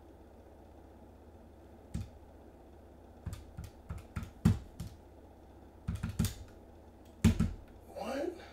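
Typing on a computer keyboard: irregular clusters of sharp key clicks with short pauses between.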